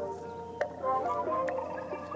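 Instrumental background music: a run of held, stepping notes, with two short clicks.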